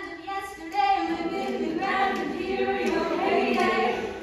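A large ensemble of young voices singing together on stage, the sound swelling fuller and louder about a second in.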